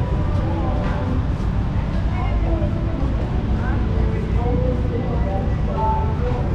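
Busy outdoor street ambience: a steady low rumble with indistinct voices of passers-by talking.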